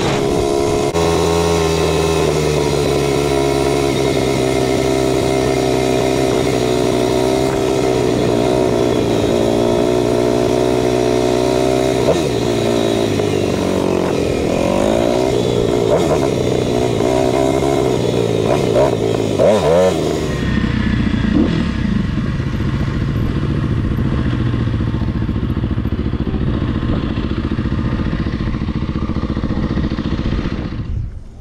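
Kawasaki KLX300R dirt bike's single-cylinder four-stroke engine heard up close from the handlebars, running at a steady cruising speed. Between about 12 and 20 seconds in the revs rise and fall as the bike slows. It then runs low and steady for the last third.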